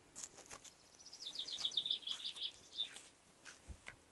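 A songbird singing outdoors: a fast run of about a dozen high chirps, stepping slightly down in pitch, starting about a second in and lasting under two seconds. A few faint clicks come along with it.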